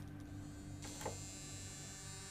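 A low, steady hum, with a faint high whine joining about a second in.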